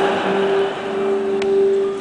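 Live acoustic music from the stage: a long note held at a steady pitch for well over a second, with a single sharp click partway through.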